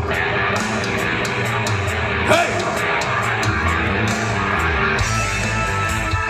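Live rock band playing an instrumental passage with guitar and bass, with a brief rising note a little over two seconds in.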